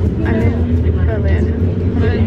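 Steady low rumble of a moving passenger train heard from inside the carriage.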